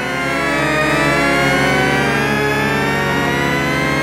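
Synthesized sweeping sound effect: many electronic tones gliding up and down at once and crossing each other, swelling in loudness over the first second and then holding steady.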